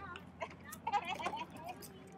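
Faint voices of people talking at a distance, with a few light scattered clicks.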